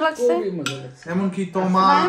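Metal cutlery clinking and scraping against china plates as food is served at the table, with a person talking over it.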